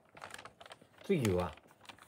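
A quick run of light clicks and taps, then a man's voice giving a short 'ha' that falls in pitch.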